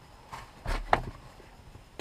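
Quiet car cabin with the engine switched off, broken about a second in by a brief low thump with a sharp click.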